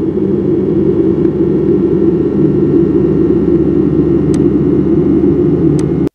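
Amurg Lite software synthesizer playing its 'FX Seeberla' effects preset: a held note producing a loud, low, noisy drone that swells slightly and holds steady. Two faint clicks come in the last two seconds, and the drone cuts off abruptly at the very end.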